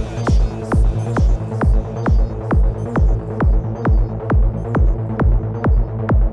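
Electro-industrial dance music: a steady four-on-the-floor kick drum, about two and a half beats a second, over a sustained deep bass drone, with no vocals. A hissing high layer fades away in the first half.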